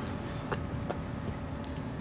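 Steady low outdoor rumble of distant city traffic, with a faint click about half a second in and another near one second: a putter tapping a mini-golf ball on artificial turf.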